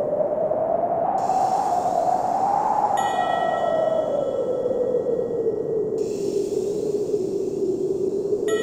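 Howling wind, its whistle slowly rising and falling in pitch. About three seconds in, a bell-like chime note rings out and holds.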